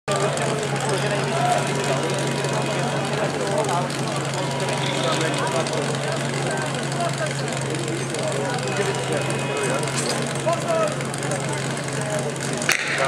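Crowd chatter over the constant, unchanging drone of an engine running at a steady speed.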